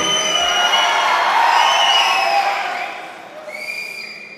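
A crowd cheering with many shrill whistles, the noise fading away over the second half.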